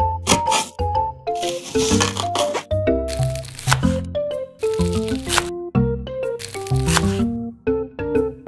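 Miniature kitchen knife chopping an onion on a tiny wooden cutting board: a series of crisp cuts, over background music with a bouncy melody.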